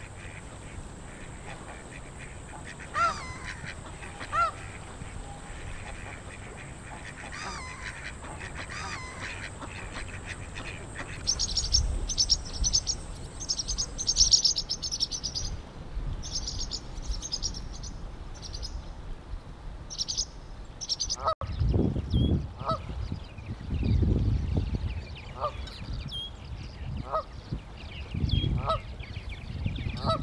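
Canada geese honking: a couple of single honks early, then a string of honks in the last third. A run of rapid, higher-pitched bird chatter comes in the middle, and wind rumbles on the microphone in the second half.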